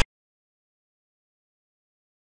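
A single sharp click at the very start: the piece-placing sound effect of a xiangqi board program as a move is played.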